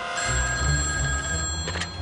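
Telephone bell ringing, cut off with a click near the end as the receiver is picked up. Under it, the low rumble of printing presses running starts soon after the ringing begins.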